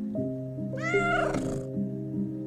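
A cat meows once, about a second in: a single call that rises and then falls in pitch, over background music.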